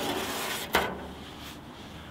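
Rear engine deck lid of a 1968 Volkswagen Karmann Ghia being lifted open by hand: a rustle of handling, then a single sharp metallic click under a second in.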